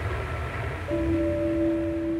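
A low hum of old film-soundtrack noise, then a single low note of background music comes in about a second in and is held steady.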